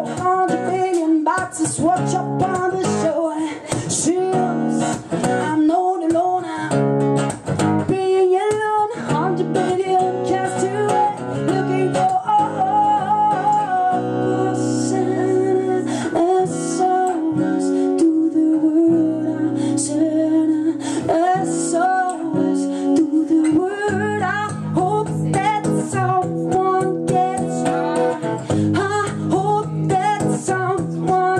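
A woman singing a song while strumming an acoustic guitar, performed live.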